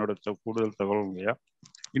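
A man's voice speaking over a video call, then a few short clicks near the end.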